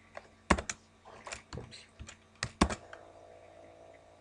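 Computer keyboard being typed on: a handful of irregular keystrokes, two of them louder, about half a second in and again near the middle.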